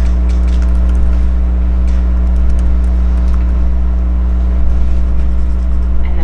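Steady low hum with a fainter higher hum tone above it, unchanging throughout, and a few faint small clicks and rustles.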